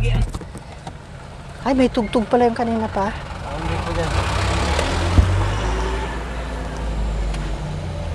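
Low steady rumble of a car heard from inside the cabin. Over the middle few seconds a rushing hiss swells and then fades.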